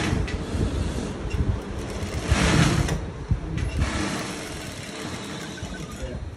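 Industrial single-needle sewing machine running in uneven spurts as a strip of fabric is stitched, loudest about two and a half seconds in, dying down after about four seconds.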